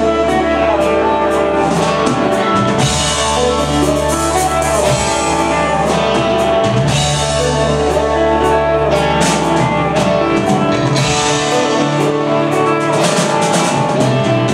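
Live rock band playing an instrumental passage with no singing: electric guitars over a drum kit with frequent cymbal hits and sustained low bass notes.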